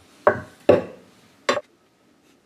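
A cleaver chopping sausage links on a wooden cutting board: three knocks of the blade through the meat onto the board in the first second and a half.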